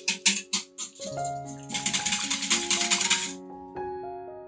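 Wire whisk beating eggs and milk in a glass bowl: quick clinking strokes against the glass, about five a second, then a faster continuous whisking clatter that stops suddenly a little over three seconds in. Soft piano music plays underneath.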